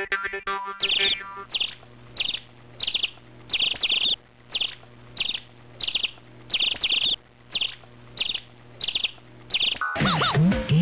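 A bird chirping over and over, one short high chirp about every two-thirds of a second, over a low steady hum. Music ends in the first second.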